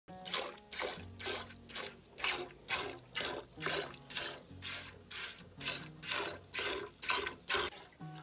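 Milk squirting into a steel pail as a goat is milked by hand: short hissing streams, about two and a half a second, in a steady alternating rhythm.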